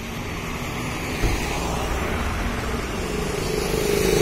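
Street traffic: a car driving up the road, its engine and tyres growing louder toward the end as it comes closer, with a brief low thump about a second in.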